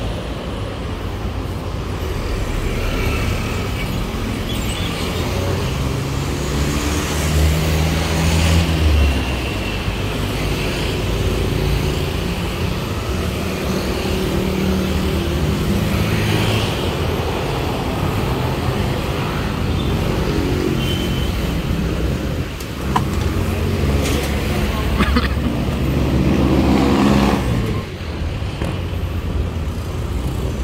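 Road traffic noise with a motor vehicle engine running, its pitch shifting as it speeds up and slows. It swells louder about eight seconds in and again near the end.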